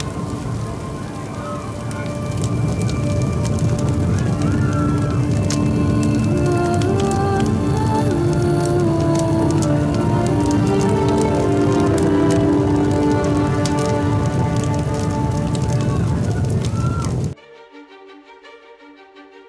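Dramatic score with sustained notes over the dense crackling of a fire burning. Both cut off suddenly near the end, leaving quieter string music.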